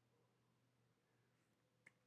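Near silence: room tone, with one faint short click near the end.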